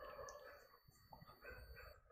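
Near silence: room tone with only faint, indistinct background sounds.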